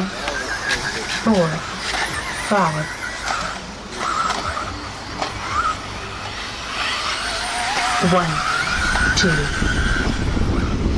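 Electric 1/10-scale 4WD RC buggies with 13.5-turn brushless motors whining on a dirt track, the pitch rising and falling as they accelerate and brake. A low rumble comes in near the end.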